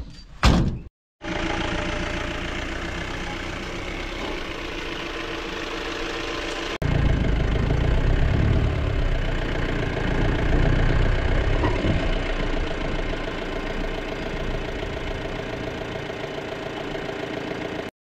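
A thump near the start, then a Mahindra Bolero Pik-Up truck's engine running with a steady drone as it is backed out and driven off. About seven seconds in it suddenly becomes louder and deeper, and stays so.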